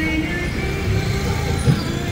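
Busy street noise with vehicles running, mixed with music playing a wavering melody.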